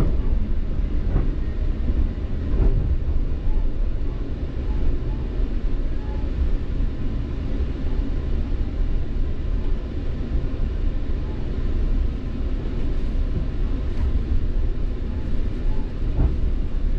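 Steady rumble of a Metrolink commuter train coach running along the line, heard from inside the car.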